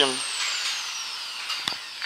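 Handheld electric drill spinning down after drilling a hole in a steel profile-pipe greenhouse frame: a falling whine that fades away, with a short metallic click about a second and a half in.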